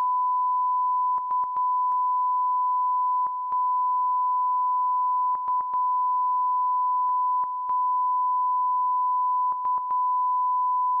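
Steady 1 kHz line-up test tone of a broadcast colour-bars signal, broken every second or two by brief dropouts with small clicks, some in quick pairs or threes.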